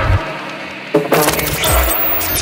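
Techno music at a break in the track. The kick drum and bass drop out for under a second, a sharp hit lands about halfway through, and a loud hiss then sweeps in over the top.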